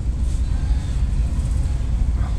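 Steady low background rumble with no distinct tool or part sounds.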